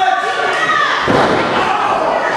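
Wrestler's body slamming onto the wrestling ring canvas with one heavy thud about a second in, over a crowd's voices shouting.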